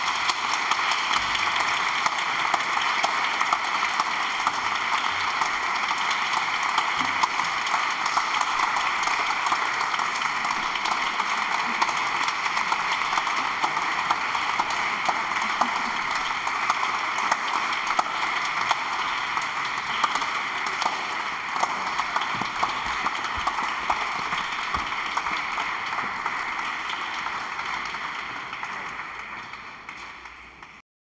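Audience applauding steadily after a string quartet performance, tapering off near the end.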